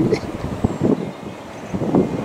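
Wind buffeting the camera's microphone, an uneven low rumble that rises and falls in gusts.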